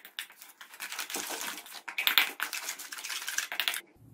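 Metal spoon scraping and clicking against a stainless steel bowl while stirring spices into yogurt to make a paste: a rapid, irregular run of small clicks that stops just before the end.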